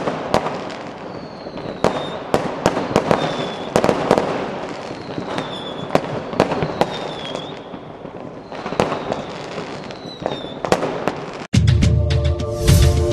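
Fireworks bursting, with many sharp bangs and crackles and several short whistles that fall slightly in pitch. The sound cuts off abruptly near the end.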